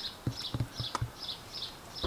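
A small bird chirping over and over, a little over two short high chirps a second, with a few soft knocks in the first second.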